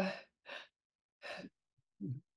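The end of a spoken 'yeah', then two short, soft exhalations from a person, about half a second and a second and a half in.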